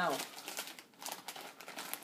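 Plastic snack chip bag crinkling irregularly as it is pulled open and handled.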